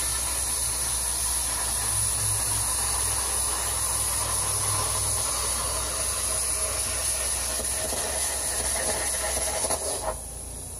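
Cheap plasma cutter arc hissing steadily as it cuts through the painted steel dash of a 1971 Ford F100 cab, crackling and sputtering at times, which the operator puts down to the paint on the metal. It stops suddenly right at the end.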